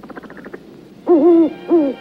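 Two loud hoots, the first about half a second long and the second shorter, each dropping in pitch at its end, after a faint crackle at the start.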